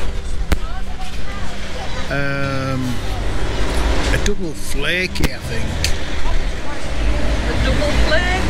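Street ambience: a steady low rumble of traffic, with brief snatches of nearby voices in the middle.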